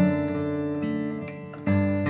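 Song accompaniment on acoustic guitar, strummed chords ringing on with no voice, with a new chord struck near the end.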